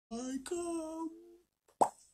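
A man's playful wordless vocalising: two held notes, the second higher, lasting about a second. A sharp mouth pop of the lips follows near the end.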